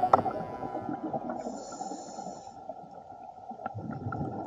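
Underwater ambience picked up by a submerged action camera: a low, muffled wash of water noise with a few scattered clicks and a brief hiss near the middle.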